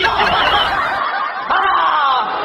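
A person laughing, a chuckle that picks up again about one and a half seconds in.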